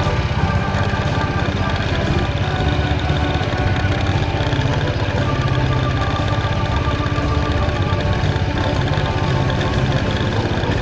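Hesston 140 tractor's engine running steadily as it drives along, its rapid firing pulses low and even. Background music plays over it.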